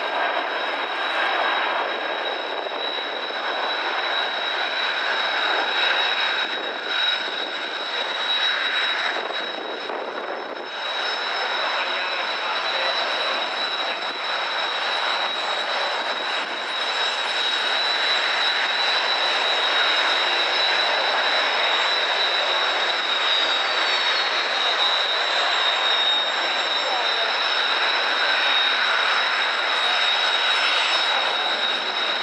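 Jet engines of a Boeing E-767 AWACS aircraft, its two General Electric CF6 turbofans, running as it flies past, a steady jet noise with a high whine. The sound dips briefly and then grows a little louder through the second half.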